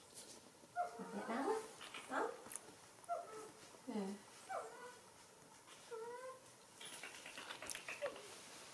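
Baby monkey whimpering: a string of short, thin calls that bend up and down in pitch, a second or so apart.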